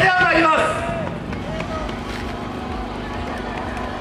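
Portable generator running with a steady hum beneath street crowd noise. A voice calls out briefly at the start.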